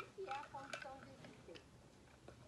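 A quiet woman's voice making a short wordless sound, with a light click about three quarters of a second in.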